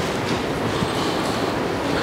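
Steady rushing noise with a low rumble.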